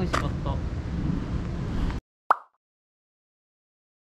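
Outdoor street ambience with a few brief words, cut off abruptly about two seconds in. A moment later comes a single short, sharp pop sound effect, then complete digital silence.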